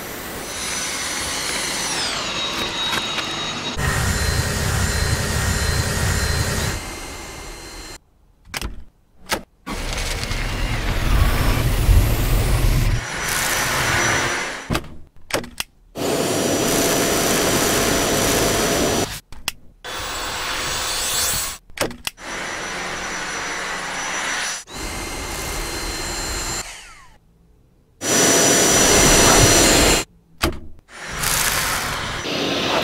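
Dyson cordless stick vacuum running with a steady high whine. It is heard in a string of short clips that cut off abruptly, with brief silences between them.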